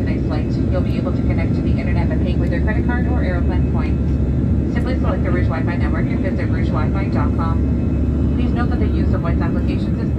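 Jet airliner's engines running steadily, heard from inside the cabin as a constant low rumble, with indistinct voices over it.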